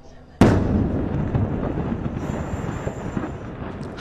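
A missile strike explosion: a sudden loud blast about half a second in, followed by a dense crackling of many smaller bursts that slowly fades.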